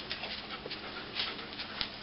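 Rough collie panting while working a scent track, with two short clicks, one about a second in and one near the end.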